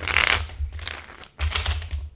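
A deck of tarot cards being riffle-shuffled: two quick bursts of cards fluttering together, one right at the start and a second about a second and a half in.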